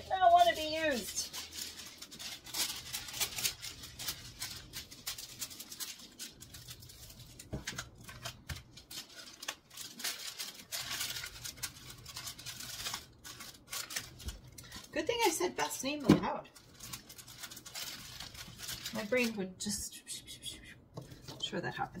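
Plastic packaging crinkling and rustling in a run of fine crackles as a clear plastic bag is handled and pressed flat during packing, mostly in the first half. A woman's voice makes brief wordless sounds at the start and twice in the second half.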